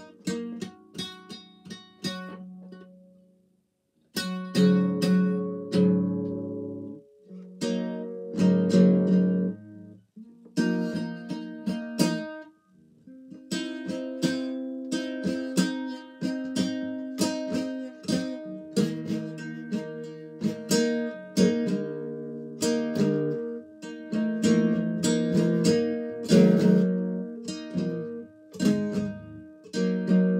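Classical acoustic guitar played casually and improvised, with strummed chords and plucked notes ringing, and a short break in the playing about three seconds in.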